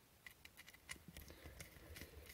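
Near silence with a scatter of faint small clicks as the opened plastic test probe, its circuit board and wires are handled.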